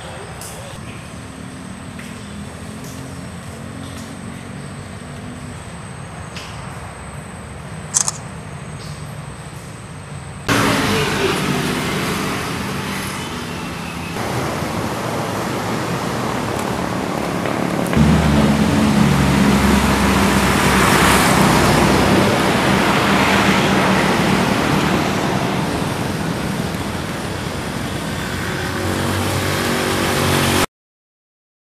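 Outdoor ambience in two parts. First a quiet, even background with a steady high thin tone and a single click. Then, after a sudden cut about a third of the way in, much louder road-traffic noise with a low rumble that swells past the midpoint.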